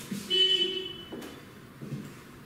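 A short, high-pitched horn toot lasting under a second, starting about a third of a second in, followed by a few faint knocks.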